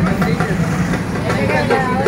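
Auto-rickshaw engine idling with a steady low throb, under several people talking.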